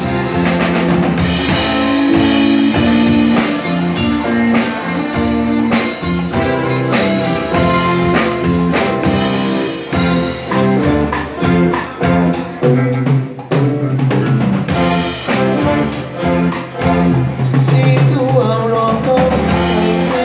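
Live band playing a song on electric guitars and a drum kit, with keyboards, loud and continuous.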